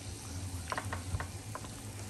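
Prawns and scallops sizzling in butter on a round slotted tabletop grill plate: a steady frying hiss with a few short, sharp ticks in the middle.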